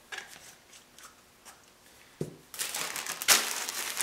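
A single soft knock, then a plastic bag of pelleted neem cake crinkling loudly as it is picked up and handled.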